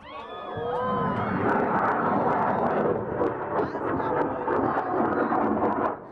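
A large amateur rocket's motor igniting and lifting off: a roar that builds over about a second, then holds loud and crackling. Crowd shouts rise over it in the first second or two.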